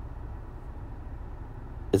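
Steady low background rumble with no distinct event. A man starts speaking at the very end.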